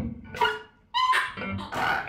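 A woman improvising with her voice into a microphone, her hands cupped around her mouth, making short dog-like cries. They come in bursts, break off for a moment about half a second in, and return as bending, pitched calls.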